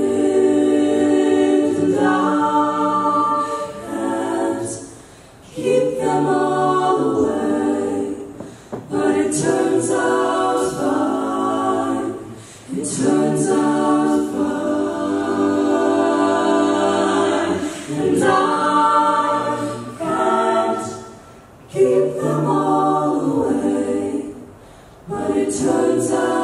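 A mixed-voice a cappella group singing live in several-part harmony, in phrases separated by brief pauses.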